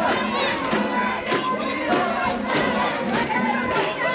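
Bearers of a Sōshū-style shrine mikoshi chanting their rhythmic "dokkoi, dokkoi" call, with the metal fittings on the palanquin clanking in time, about one and a half to two clanks a second.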